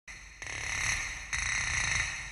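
A high, hissing whir of a sound effect with several steady whistling tones over it, coming in twice and swelling louder each time.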